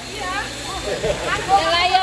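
Speech only: young girls' voices talking and calling out, with a low steady background hum.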